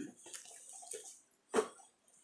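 Faint rustling and handling of a zippered fabric makeup pouch close to the microphone, with one short thump about one and a half seconds in.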